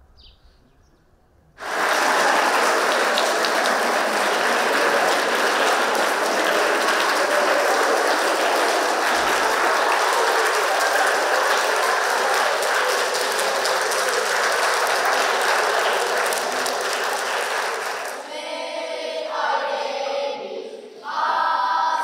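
A hall full of schoolchildren applauding steadily, starting abruptly about a second and a half in. Near the end the clapping dies away and a group of children starts singing together.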